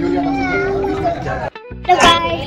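A child's voice over background music; the sound drops out abruptly about a second and a half in, at an edit, before a louder voice starts.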